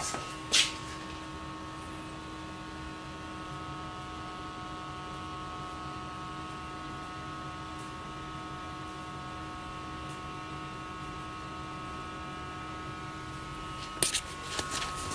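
Steady electrical hum with a few faint steady tones running under it, and one sharp click about half a second in.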